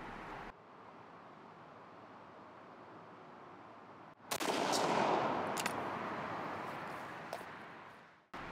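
A single shot from a Winchester SXP 20 gauge pump shotgun firing a Longbeard XR No. 6 turkey load, about four seconds in. The report dies away slowly over the next few seconds.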